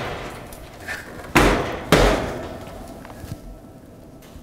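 Range oven door clunking twice, about half a second apart, as it is moved on its hinges, each knock of metal and glass ringing briefly.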